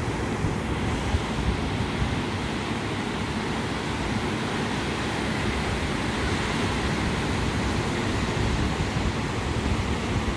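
Ocean surf breaking on a sandy beach, a steady wash of noise, with wind buffeting the microphone.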